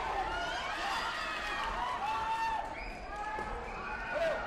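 Several overlapping voices calling out and chattering in a large, echoing sports hall, with a few faint thuds from the mats.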